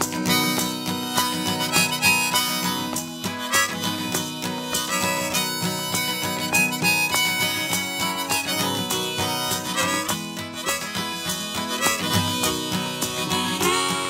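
Instrumental break in an acoustic folk song: a harmonica plays a lead melody over strummed acoustic guitar, with no singing.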